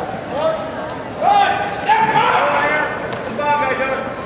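Raised voices shouting across a large gym hall during a wrestling bout, in short, high-pitched calls.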